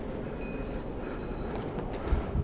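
Steady rushing noise of river water at the rocky bank, with a few faint clicks near the end.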